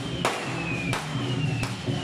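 Lion-dance troupe percussion: sharp drum and cymbal strikes about every 0.7 seconds, with a ringing gong tone that slides down in pitch between them.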